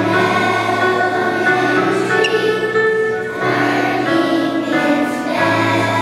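A choir of young children singing in unison with instrumental accompaniment, holding notes in phrases that change every second or two.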